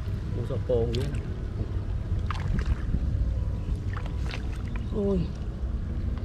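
Steady low rumble of wind on the microphone. There are short voice sounds about a second in and again near the end, and a few light water splashes as fish are handled in a shallow basket of water.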